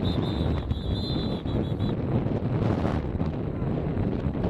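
Wind buffeting the camcorder's microphone, a steady low rumble. A faint, high trilling tone pulses about six times a second during the first two seconds.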